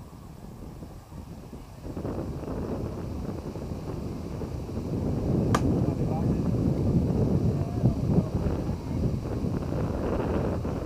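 Softball bat striking a pitched ball: one sharp crack about five and a half seconds in. It comes over wind noise on the microphone that picks up about two seconds in.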